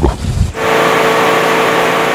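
Motorboat running at steady speed: an even engine drone under loud rushing wind and water noise, cutting in suddenly about half a second in.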